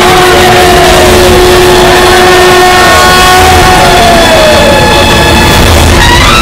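Loud, dense film background score with sound effects, with long held tones and several falling pitch sweeps, and no speech.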